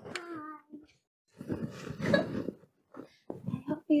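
A woman laughing: a short falling vocal 'oh', then breathy laughter and a few short chuckles, with brief pauses between.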